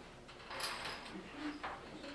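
Faint knocks and scrapes of objects being handled, with a faint voice in the room.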